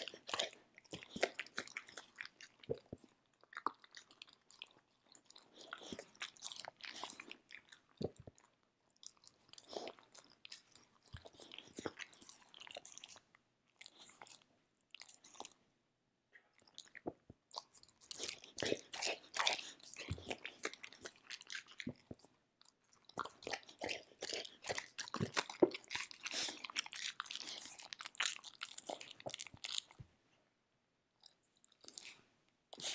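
A Samoyed crunching and chewing dry kibble close to the microphone: dense runs of sharp crunches broken by a few short pauses.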